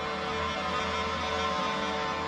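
Cornish bagpipes sounding a steady drone with held reed tones above it, in a live wind-and-drum ensemble; no drum strokes stand out.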